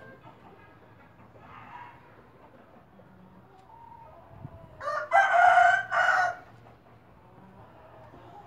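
A rooster crowing once, a single cock-a-doodle-doo about a second and a half long, starting about five seconds in.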